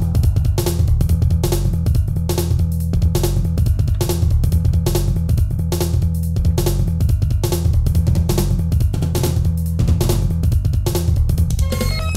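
Synthesizer music over a steady, fast drum beat with a heavy sustained bass underneath. Near the end a higher synth lead comes in with held notes.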